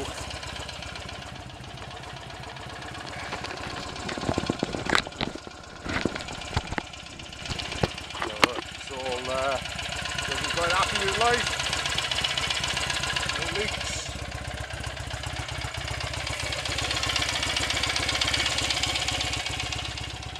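A freshly rebuilt BSA A65 650 cc parallel-twin engine idling steadily while warm, with some sharp knocks and clicks around the middle.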